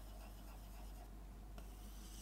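Faint sound of drawing on a black writing board as a small circle and a line are marked out.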